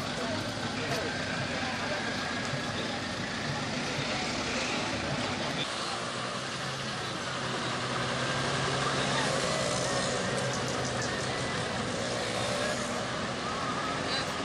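Roadside traffic: a heavy vehicle's engine running steadily, with people talking in the background.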